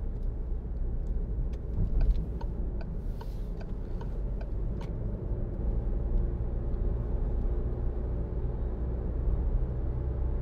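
In-cabin road noise of a 2016 Citroen Grand C4 Picasso 1.6 BlueHDi four-cylinder diesel at motorway speed: a steady tyre and road rumble with a faint engine hum. A few light clicks come in the first half.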